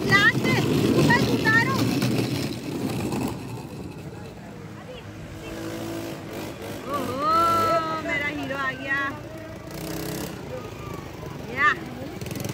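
High, gliding children's voices and squeals, with the loudest sharp squeal near the end, over steady outdoor background noise.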